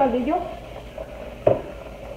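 A single knock of a glass pot lid being set down, about one and a half seconds in.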